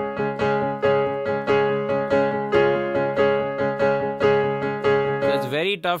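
Digital piano playing a chord struck over and over in an even pulse, about three strikes a second: the D-flat driven bridge section of the song. The playing stops shortly before the end.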